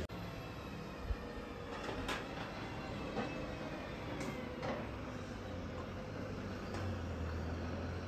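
Distant heavy machinery running with a steady low hum, with a few sharp knocks and faint high squeals.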